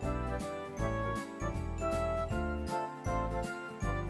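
Background music with bright, bell-like notes over a moving bass line and a steady beat.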